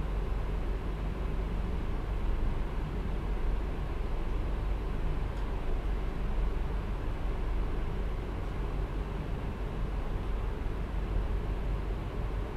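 Steady low rumble with hiss: the background room noise of the recording, with no other sound standing out.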